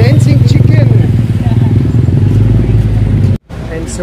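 A motor vehicle engine running close by: a loud, steady low rumble with a fine, even pulse, over faint voices. It cuts off abruptly about three and a half seconds in, and quieter street noise follows.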